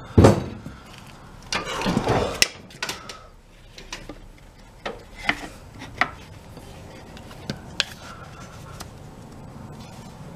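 Metal handling at a bench vise as a ball-peen hammer head is freed from its jaws: a loud knock just after the start, a clatter about two seconds in, then scattered light metallic clicks.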